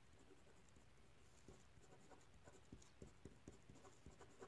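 Faint pen strokes on paper as a word is written by hand: soft scratches and light ticks, more frequent in the second half.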